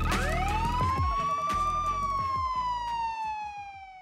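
Outro music: a synthesized tone sweeps up in pitch over the first second, holds briefly, then glides slowly down, with a few low thuds under it. It fades out near the end.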